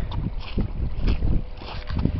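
Wind buffeting the microphone in a low rumble, with scattered footsteps on crusted snow and mud.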